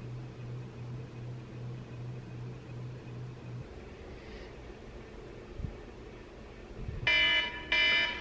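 A faint low hum pulsing about twice a second, which stops before halfway. About seven seconds in, a smartphone alarm starts ringing with a loud, repeating pitched tone.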